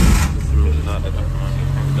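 A Suzuki van's small petrol engine catches and fires up, loudest just as it starts and surging for about half a second. It then settles into a steady idle.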